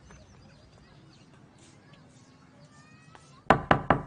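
Faint background with a few faint chirps, then near the end a rapid run of loud knocks on a wooden door, about six a second.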